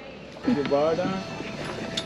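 A short burst of a person's voice about half a second in, without clear words, with a few light knocks, over a steady outdoor background.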